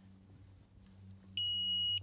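Handheld digital luggage scale giving one steady, high-pitched electronic beep lasting about half a second, starting near the end and cutting off sharply: the scale's signal that the weight reading has settled and locked. A faint steady low hum runs underneath.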